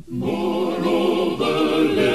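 Choir singing, the voices entering just after a brief pause and swelling fuller about one and a half seconds in, with a wavering vibrato on the held notes.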